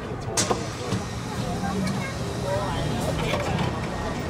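Metro train and station ambience: a steady low rumble with passengers' voices, and a sharp click about half a second in.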